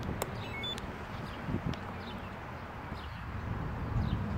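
Wind rumbling on the microphone, with a click and a few short electronic beeps about half a second in.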